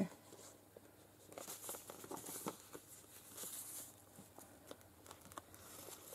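Faint rustling and crinkling of paper, in short spells with a few light ticks, as the pages and envelope pockets of a thick, stuffed junk journal are handled and turned.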